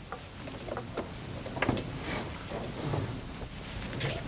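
Quiet handling noise: light clicks, knocks and rustles as a small plastic wireless radio on its mounting stand is picked up and moved.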